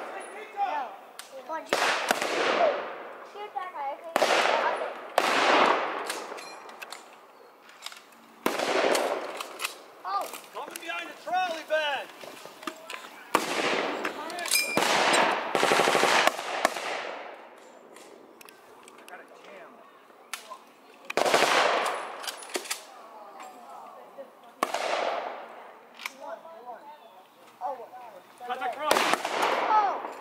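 Blank-fire gunshots from WW2-era rifles and a machine gun in a mock battle. Single loud shots come every few seconds, each echoing away, with a rapid burst around the middle.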